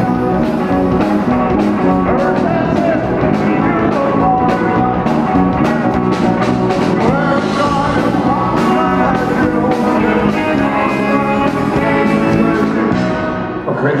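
Live rock and roll band playing: electric guitars, electric bass and a drum kit with a steady beat. The song stops near the end.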